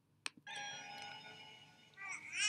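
A sharp click, then the film's orchestral score comes in with a soft held chord of many steady tones that slowly fades, leading into the lullaby.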